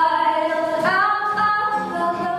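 A girl singing a long held note to her own acoustic guitar, stepping up to a new note about a second in.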